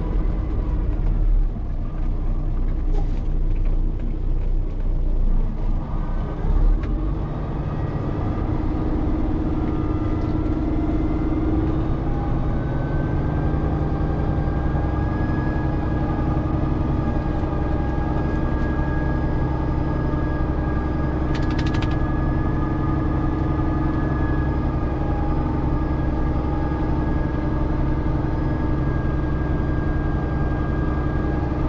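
Peterbilt 389 truck's diesel engine heard from inside the cab while rolling slowly. There is an uneven rumble with a few knocks for the first several seconds, then it settles into a steady drone from about eight seconds in. A brief cluster of clicks comes about two-thirds of the way through.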